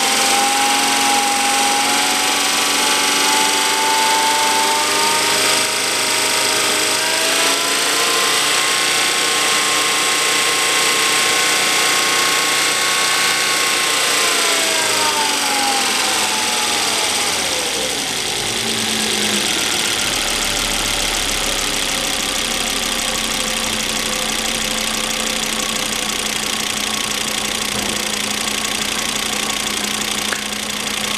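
Volvo S60's 2.5-litre engine running at a fast idle just after start-up. About halfway through, the revs drop smoothly over a few seconds and the engine settles into a steady, lower idle.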